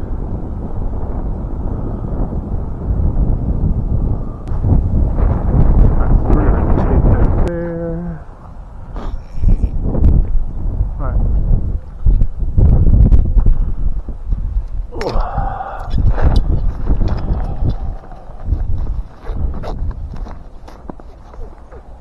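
Wind buffeting the microphone as a heavy, gusting low rumble, rising and falling in strength, with scattered small clicks and knocks.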